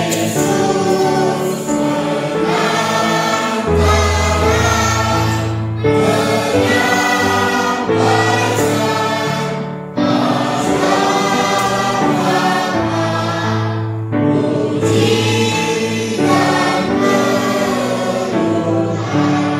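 Choir singing a slow hymn with sustained instrumental accompaniment, in phrases broken by short pauses every few seconds.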